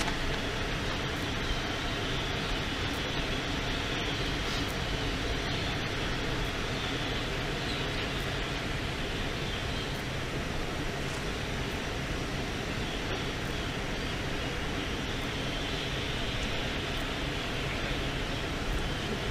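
Steady outdoor background noise: an even rumble and hiss with no distinct events.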